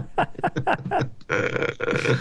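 Men laughing: a quick run of short pitched laughs, about five a second, turning breathier near the end.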